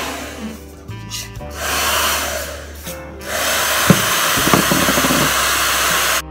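Two spells of steady hiss of rushing air, the first about a second long, the second nearly three seconds and ending suddenly, over background music with a steady bass.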